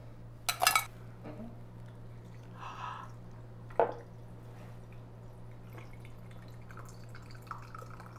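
Ice clattering into a glass from a metal scoop about half a second in, and a sharp knock just before four seconds. Then a faint, steady trickle as a plastic spigot tapped into a hollowed watermelon dispenses a thin stream of watermelon juice and soda water into the glass.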